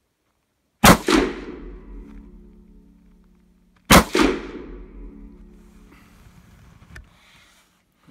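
Two rifle shots from a Hubertus over-under double rifle in 9.3x74R, about three seconds apart, one from each barrel, each followed by a reverberant ring that dies away over a couple of seconds. A short click comes near the end.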